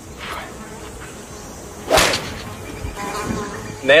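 Golf driver striking a ball off the tee: a single sharp crack about two seconds in.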